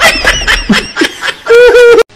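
A person laughing hard in quick, rapid bursts, then a loud, held high-pitched cry about a second and a half in.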